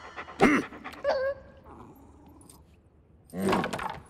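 Short dog vocal sounds from an animated cartoon dog, made as voiced sound effects: one call about half a second in, a second just after one second, and a third near the end, with quiet between them.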